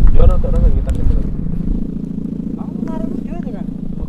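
An Indonesian sound kite's hummer (sendaren) droning steadily in a loud, low, buzzing tone.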